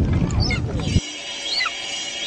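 A loud low rumble crossed by short high calls that fall in pitch, cut off at about a second in. Music with steady held tones follows, over a high, screeching bird call that falls in pitch and repeats.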